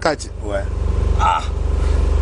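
A low, steady engine rumble with a fine regular pulse, like a motor idling close by, under a few brief voices.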